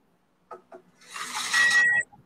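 A microphone being handled and set in place: a couple of small clicks, then a rushing hiss that grows louder. A thin steady high whine joins it near the end, and the sound cuts off suddenly.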